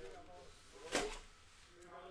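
A single short plastic clack-and-rustle about a second in as a rigid card top loader is handled, with faint muttered speech around it.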